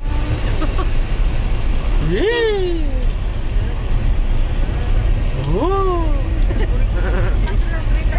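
Steady low rumble of a car's engine and tyres heard from inside the cabin as it drives slowly down a rough hill road. Over it a voice calls out twice, each time rising and then falling in pitch, about two seconds in and again near six seconds.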